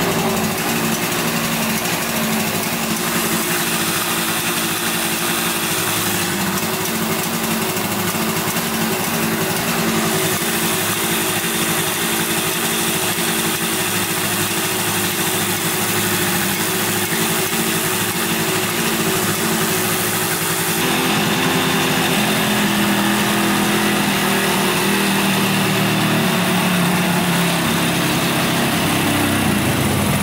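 1971 Yamaha CS200 two-stroke twin engine running steadily at idle, its note shifting about two-thirds of the way in; the owner thinks it is running on only one cylinder.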